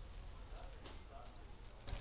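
Quiet hall ambience: a low steady hum with faint, distant voices of people in the background.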